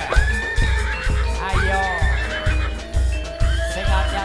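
Live jaranan music through a stage sound system: a heavy bass drum beat about one and a half beats a second under high wailing melody notes that swoop up and then hold.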